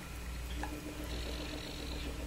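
Quiet room tone: a low steady hum with a faint even hiss, and a faint steady tone that comes in about half a second in.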